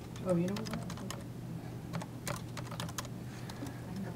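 Typing on a computer keyboard: a run of quick, irregular key clicks, over a low steady hum.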